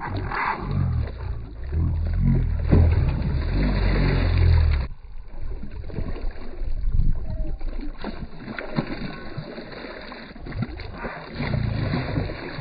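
Hooked largemouth bass thrashing and splashing at the water's surface beside the boat. A low rumble runs through the first five seconds and cuts off suddenly, then irregular splashes and sloshing follow.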